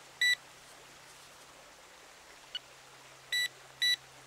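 Garrett Pro Pointer pinpointer giving short high beeps as it is switched on and off: one beep just after the start, a small click in the middle, then two beeps about half a second apart near the end.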